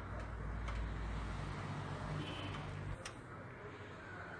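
Quiet background rumble with a few faint light clicks, the clearest about three seconds in.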